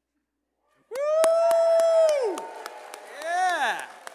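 People whooping and clapping. A long held "woo" starts suddenly about a second in, followed near the end by a shorter whoop that rises and falls, over steady hand claps.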